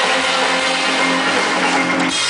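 Live band music in concert, with notes held steadily through the moment.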